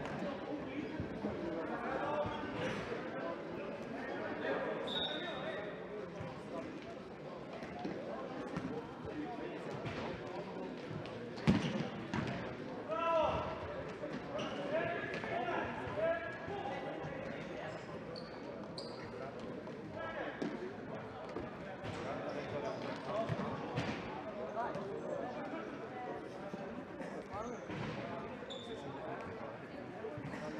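Indoor futsal game in a large, echoing sports hall: the ball being kicked and bouncing on the hard floor amid players' and spectators' shouts. A single loud, sharp kick comes about eleven seconds in, followed by a burst of shouting.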